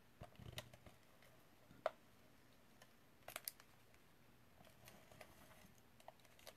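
Faint, scattered clicks and taps of a tape-runner adhesive dispenser being applied to the back of a paper piece, with a pair of clicks a little past the middle. The runner is getting to the end of its adhesive.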